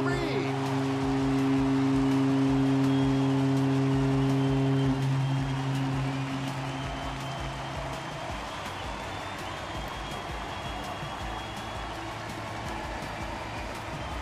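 Stadium home-run horn sounding one long, steady note after a home run. It is loudest for the first five seconds and gone by about eight seconds in, over a crowd cheering.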